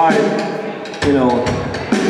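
A man talking into a stage microphone, with the band playing softly underneath.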